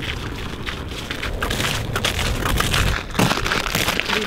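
Boots crunching and scraping on frost-covered lake ice as several people walk together, a dense stream of small crackles over a steady low rumble.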